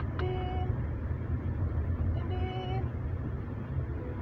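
Steady low rumble of engine and road noise inside a Toyota car's cabin as it drives slowly in traffic. Two short steady tones sound over it, one near the start and one about two seconds later.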